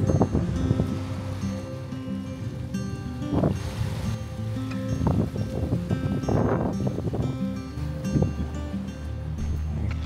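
Background music with strummed guitar chords over held low notes.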